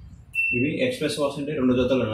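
A single short electronic beep from an IFB front-loading washing machine's control panel as a button is pressed, about a third of a second in, followed by a man talking.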